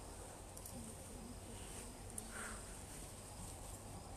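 Faint room tone: a steady low hum under a steady high-pitched hiss, with a few soft clicks.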